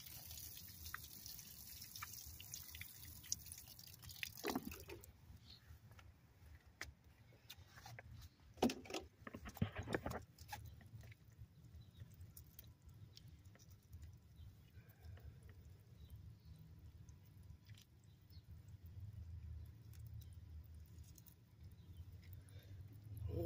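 Water sprinkling from a watering can's rose onto gravel and soil, a steady splashing hiss that stops suddenly about five seconds in. A few faint knocks follow.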